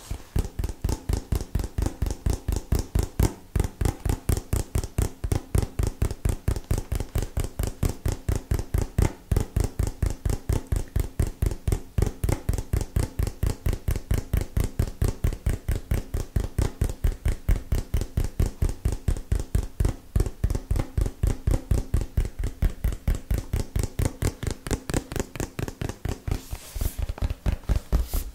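Rapid fingertip tapping on a small cardboard product box held against a microphone, an even run of about five taps a second without a break.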